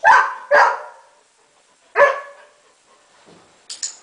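A golden retriever barks three times: two quick barks, then a single bark about a second and a half later. Two short, sharp clicks follow near the end.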